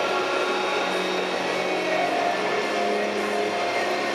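Steady, echoing stadium din, with music over the public-address system mixed into the crowd noise.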